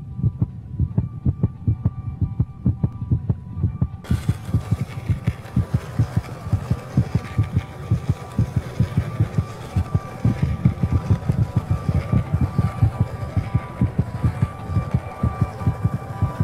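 Film soundtrack of rapid low throbbing pulses, about four a second, under steady high hum-like tones. A hissy noise layer joins about four seconds in.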